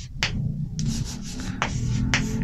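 Chalk rubbing and scratching on a chalkboard as numbers are written: a short stroke near the start, then a longer run of scraping through the middle.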